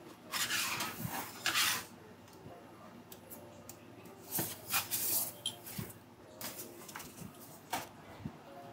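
A spatula and a metal pizza peel scraping and clattering on a wooden counter as a pizza is worked onto the peel, in several short bursts: a longer run near the start, then shorter scrapes about halfway through and again near the end.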